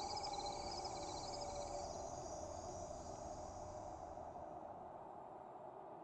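Faint trilling of night insects, fast repeated chirps that fade away over the first few seconds, over a soft steady background hiss.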